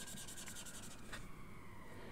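Faint rubbing of a Faber-Castell Pitt Artist Pen dual marker's brush tip on sketchbook paper as it colours in an ink swatch, with one soft tick about a second in.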